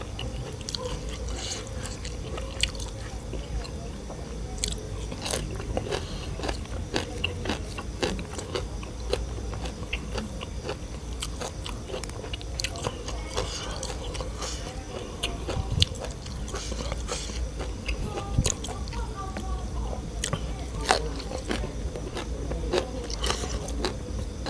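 A person chewing food close to the microphone, with many short, crisp crunches and clicks coming irregularly.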